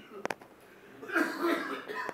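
A man coughing off-camera: one rough cough about a second in, lasting under a second, after a couple of short clicks.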